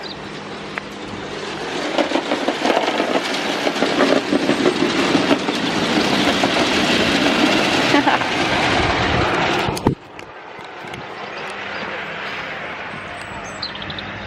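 Model garden-railway train running along its track, a steady rumbling clatter that grows louder as it comes past and cuts off suddenly about ten seconds in, leaving quieter outdoor background noise.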